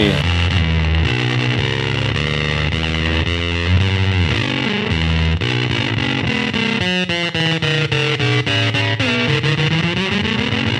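Electric bass played through the Computer 2 fuzz pedal in mode C: a bit-crushed fuzz with random pitch jumping, like a randomly fluctuating sample rate. A riff of short stepped notes that turns choppy and stuttering in the second half.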